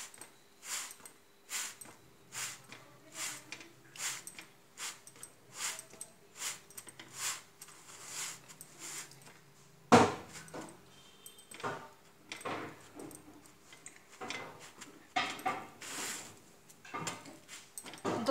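Folded cloth dabbed down again and again on a roti cooking on an iron tawa, a soft press about once a second, pressing the roti so it cooks through crisp. A sharper knock about ten seconds in.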